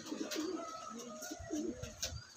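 Andhra pigeons cooing, several low wavering coos in a row.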